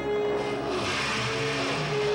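Film score music with sustained held tones, overlaid by a rushing hiss that swells about half a second in and fades near the end.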